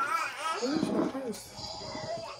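Voices without clear words: a high-pitched voice at the start, then a lower, drawn-out voice that rises and falls about half a second in.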